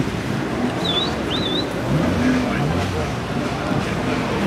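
Background voices and a car engine running, with two short, high, wavering chirps about one and one and a half seconds in.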